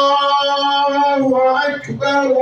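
A man chanting in long, held melodic notes, one phrase sustained for about two seconds that dips in pitch and briefly breaks near the end.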